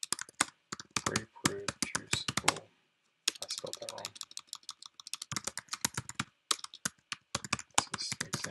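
Typing on a computer keyboard: rapid runs of keystrokes in bursts, with short pauses between them, the longest about three seconds in.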